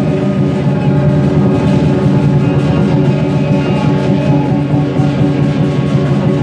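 Vietnamese lion dance percussion playing without a break: a large drum beaten rapidly under the steady ringing of cymbals and gong.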